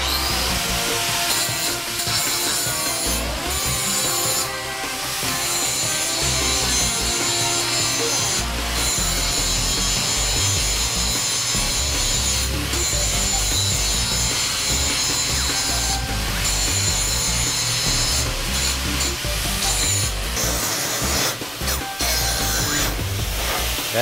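Handheld electric angle grinder with its disc grinding a steel plate, taking mill scale and dross off the beveled edge before welding: a steady, high whine with the grinding noise, broken by brief dips where the disc eases off the steel, several of them close together near the end.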